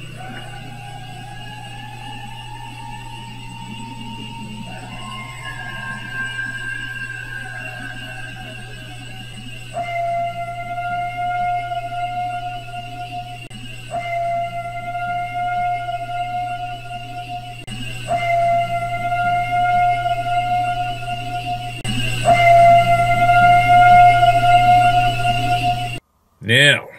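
A recording of long, steady, whistle-like tones, each held three to four seconds over a constant low hum. The first few glide slightly upward and step in pitch. The last four repeat on the same note about every four seconds, growing louder toward the end.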